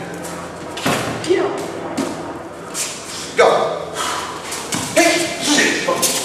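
Practice staffs knocking together and striking during sparring: several sharp, irregular knocks and thuds, with brief shouts and voices in a large hall.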